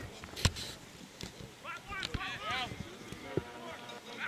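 Rugby players shouting to each other on the pitch, with a sharp thump about half a second in and a weaker knock near the middle.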